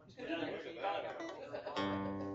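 An acoustic guitar chord strummed near the end, ringing on steadily.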